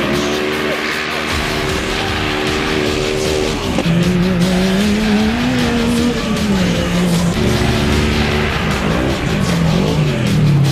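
Side-by-side UTV race engines at high revs, holding one pitch for a few seconds, then rising and falling as the throttle changes, over a steady rush of tyre and dirt noise.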